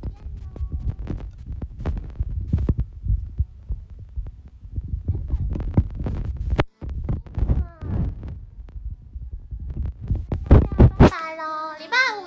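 Low, irregular rumbling and knocks from a smartphone being handled right against its microphone, with faint talking in between. Music starts about a second before the end.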